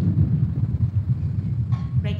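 A loud, low rumble with no clear pitch, with a voice beginning near the end.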